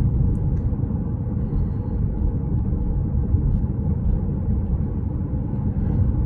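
Steady low rumble inside the cabin of a Jeep Compass 2.0 Flex at about 56 km/h: tyre noise on grooved pavement mixed with the engine running in third gear.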